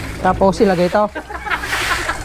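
A man's voice calling out in bending pitch, then the hiss of a garden hose jet spraying onto wet concrete near the end.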